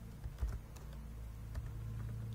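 A few separate clicks of computer keyboard keys and mouse as a spreadsheet formula is entered, over a low steady hum.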